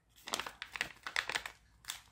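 Thin clear plastic packet crinkling and rustling in the hands as small suction cups are shaken out of it, in a run of irregular crackles with one louder crackle near the end.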